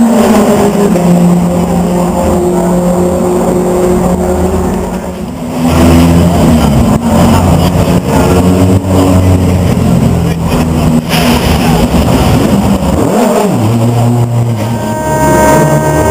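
BTCC touring car racing engine running loud and being revved, its pitch holding for a second or two and then stepping to a new level.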